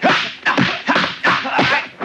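Kung fu film fight sound effects: a rapid run of sharp, whip-like hits from punches and blocks, about three a second, each with a quick swish.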